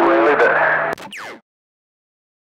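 A man's voice received over a CB radio, with a steady whistle under it at first, cuts off abruptly about a second in with a click. A short falling tone follows, typical of a CB roger beep marking the end of a transmission.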